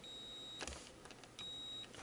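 Handheld logic probe beeping twice, a steady high tone of about half a second each, with a click between as the probe tip touches the next pin. The beeps signal a low reading on the chips' ground pins.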